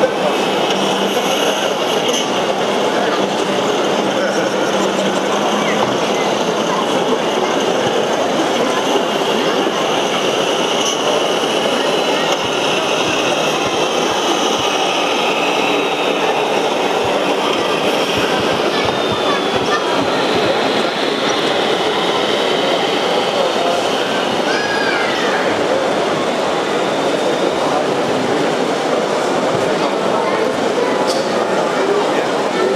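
Steady, loud din of a crowd of many voices echoing in a large exhibition hall.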